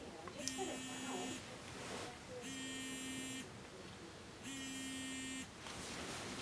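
Smartphone vibrating with an incoming call: three buzzes about a second long, roughly two seconds apart, with a light rattle.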